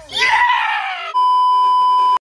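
A man's loud, drawn-out shouted "yeah", then, about a second in, a steady high test-tone beep of the kind that goes with TV colour bars, cutting off abruptly.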